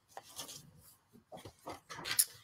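Faint rustling and a few light knocks as a hardcover book and papers are handled and set down on a desk. The sounds come in short scattered bits, more of them near the end.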